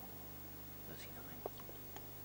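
Quiet room tone with a steady low hum, broken by faint whispering and a couple of small clicks around the middle.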